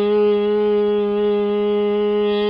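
A man's voice holding one steady, unwavering sung note, used as a test signal for a microphone feeding a 741 op-amp amplifier.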